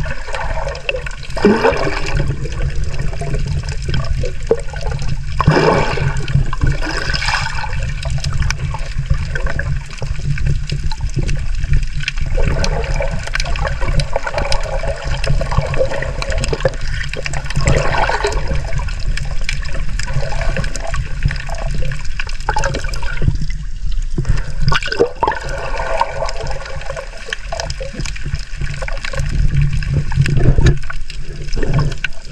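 Shallow-sea water heard underwater through a camera housing: a steady low rush with bubbling, scattered clicks and crackles, and several louder bubbling swells.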